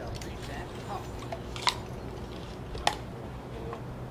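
Two sharp clicks about a second apart over a faint outdoor background.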